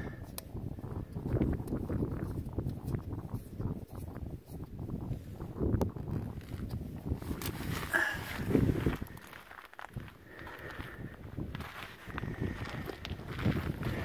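Footsteps on loose gravel, irregular and uneven, with a few small clicks and the rustle of a hand-held camera being moved.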